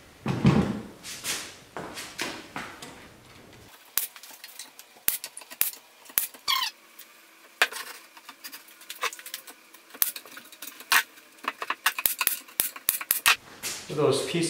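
Pneumatic nail gun firing a string of sharp shots, some loud and some faint, as MDF panels are tacked together. One brief falling squeak comes partway through, after some board handling at the start.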